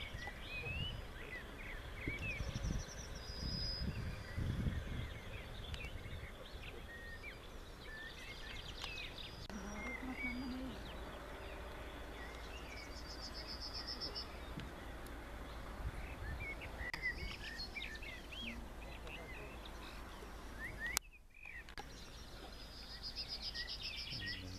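Wild birds chirping and trilling in the open countryside, with low wind rumble on the microphone in the first few seconds. Near the end there is a sharp click and a brief drop in sound where the recording cuts.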